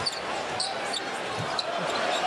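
Basketball game sound in an arena: a steady crowd murmur, with a ball being dribbled on the hardwood court and short high squeaks.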